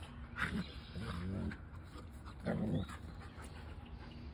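Two German Shepherds play-fighting, giving short bursts of low growling three times; the last burst, about two and a half seconds in, is the loudest.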